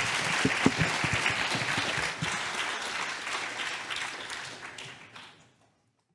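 Audience applauding, the clapping fading away near the end.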